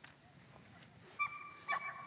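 A dog whining on one high, steady note for about a second, starting a little past halfway; the first half is quiet.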